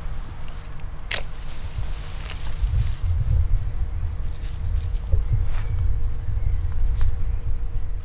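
Bypass secateurs snipping and clicking among forsythia stems, a few sharp clicks with the loudest about a second in, over a steady low rumble of wind on the microphone.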